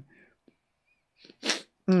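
One short, sharp sniff through the nose, about one and a half seconds in: a person smelling perfume straight from the neck of the bottle.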